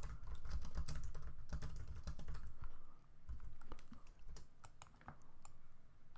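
Typing on a computer keyboard: a run of quick key clicks with a couple of short pauses.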